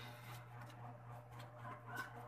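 Quiet room: a steady low hum with a few faint, short sounds in the background.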